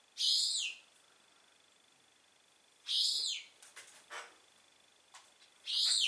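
Young feral pigeon giving high-pitched squeaky whistles: three short calls, each falling in pitch, about three seconds apart, with a few faint taps between the second and third.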